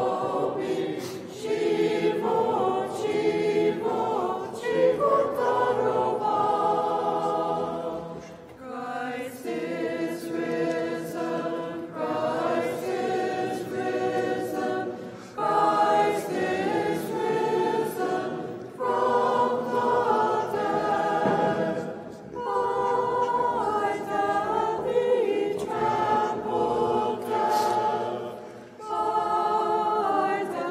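A group of voices singing an unaccompanied Byzantine chant hymn in phrases, with brief breaks between them. It is the communion hymn of the Divine Liturgy.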